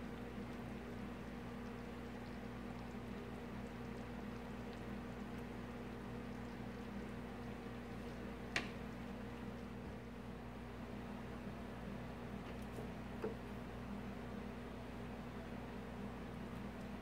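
A steady low hum, with one sharp clink of a utensil against dishware about halfway through and a lighter tap a few seconds later.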